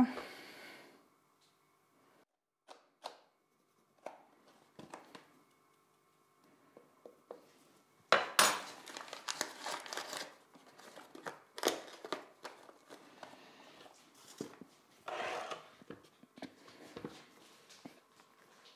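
Kitchen handling sounds: a few light knocks of dough and a mixing bowl on a kitchen scale, then from about eight seconds a stretch of packet crinkling and rustling with sharp clatters as baking cocoa is opened and tipped into the bowl of dough.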